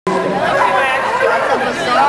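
Speech only: people talking over a steady low hum.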